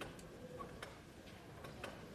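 Press camera shutters clicking irregularly, about five sharp clicks in two seconds, over low room noise.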